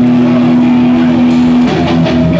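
Loud live hardcore punk band: a distorted electric guitar note held and ringing steadily, breaking off near the end as sharp drum hits come in.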